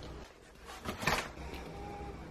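Kitchen handling noise: a brief scrape about a second in as a spoon spreads melted chocolate over a puffed rice cake.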